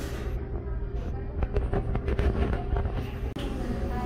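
Coffee-shop room noise: a steady low hum with scattered light clicks and knocks, and indistinct voices in the background.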